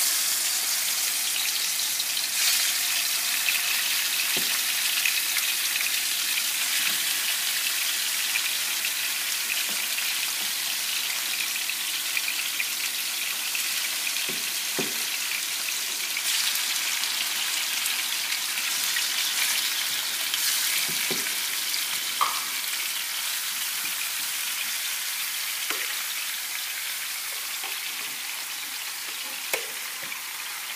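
Seasoned chicken pieces sizzling in hot olive oil in a frying pan as they are laid in. A steady hiss starts suddenly and eases slightly toward the end, with a few light clicks.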